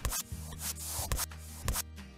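Squeezing-glue sound effect in an animated intro: a run of short rubbing, hissing strokes with small clicks, over a soft music bed with low steady tones.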